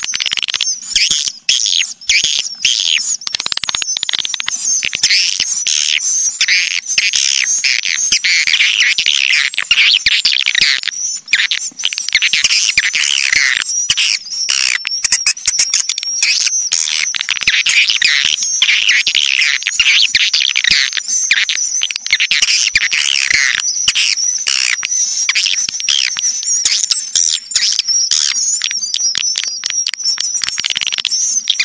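Swiftlet lure-call recording: a dense, unbroken chorus of edible-nest swiftlet twittering chirps mixed with rapid clicking calls. It is the kind of call track played in swiftlet houses to draw swiftlets in to roost and nest.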